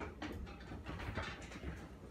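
Faint scattered taps, knocks and rustling of a man settling into his seat at a wooden table, over a low room rumble.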